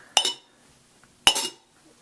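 Solid copper cups-and-balls cups being nested onto one another. There are two sharp metallic clinks, one near the start and one about a second later, each with a brief ring. The sound is pretty solid, as befits solid copper cups.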